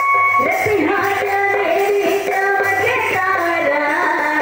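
A song with a high singing voice, most likely a woman's, coming in about half a second in over instrumental backing. The song accompanies a stage dance.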